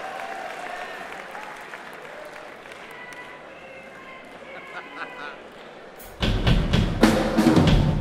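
Low murmur of a hall audience. About six seconds in, a drum kit is struck hard with a quick run of loud hits and bass drum, dying away near the end.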